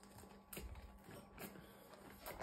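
Faint chewing of an Oreo cookie: a few soft clicks against near silence.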